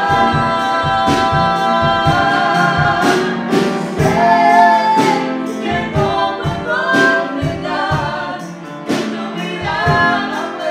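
A woman singing a gospel worship song with piano accompaniment, holding long notes.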